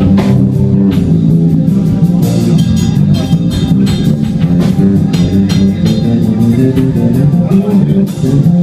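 Live instrumental rock band playing loud: electric guitar and electric bass over a drum kit with steady drum hits.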